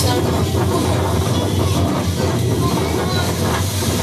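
Loud, steady rushing roar of wind buffeting a phone's microphone on a beach, with a voice faintly buried underneath: a poor-quality recording.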